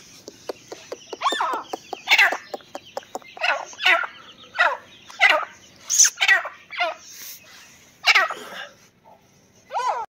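Grey francolin giving a string of short calls, roughly one a second, with a pause near the end; a few sharp clicks sound in the first three seconds.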